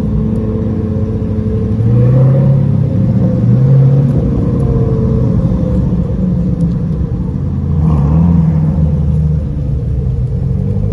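C8 Corvette's V8 running at low speed as the car creeps forward, a deep exhaust rumble with brief rises in revs about two seconds in, near four seconds and again around eight seconds.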